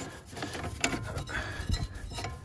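Light, irregular metallic clinks and rattles as the threaded steel spring-seat collars on an old coilover strut are turned by hand to slacken the spring.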